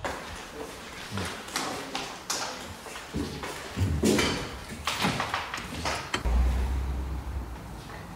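Footsteps along a hallway with a scatter of short knocks and clicks, then a brief low rumble a little after six seconds in.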